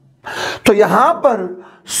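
A man's voice saying one short word, preceded by a sharp intake of breath about a third of a second in.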